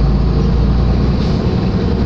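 Steady rumble of a moving road vehicle heard from inside the cabin: engine and road noise.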